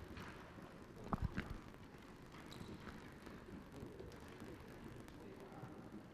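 Faint indoor sports-hall background of a futsal match, with a few quick knocks about a second in from the ball and players' shoes on the wooden floor.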